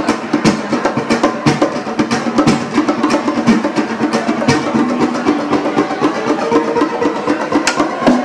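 Live duo of classical guitar and hand drums: the guitar plays a run of plucked notes while the drums are struck with bare hands in a steady, rhythmic groove of sharp slaps and tones.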